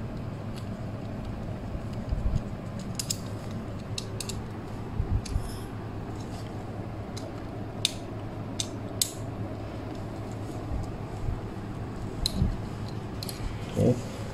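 Scattered small metallic clicks and taps from screwdrivers and wire connectors being handled while wiring a ceiling fan motor, over a steady low hum.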